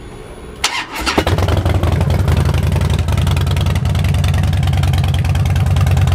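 2011 Harley-Davidson Dyna Super Glide Custom's air-cooled V-twin, breathing through Vance & Hines Short Shots exhaust, cranked on the electric starter just under a second in. It catches about a second in and settles into a steady, even idle.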